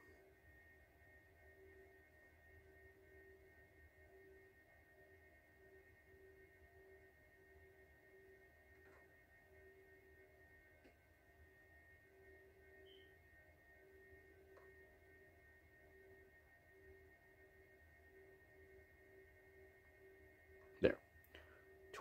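Near silence: room tone with faint steady tones, one of them pulsing about twice a second.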